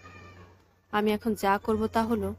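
Speech: a narrator reading a story aloud in Bengali, resuming about a second in after a short pause filled with a faint hiss, over a low steady hum.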